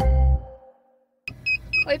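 The end of an intro music track, its held notes fading out within about half a second, then a brief silence. After that, the inside of a car: a low steady hum with a string of short, high electronic beeps, about three a second.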